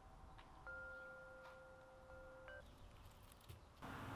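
Faint metal wind chime ringing. A couple of notes sound together about two-thirds of a second in and hold steadily, a brief higher note follows, and the notes stop a little past halfway.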